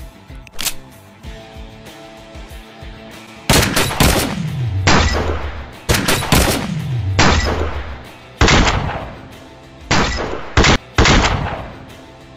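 Handgun shots in a film shootout, about seven from roughly three and a half seconds in, each sudden and followed by a long echoing tail, over a music score. The first few seconds hold only the music.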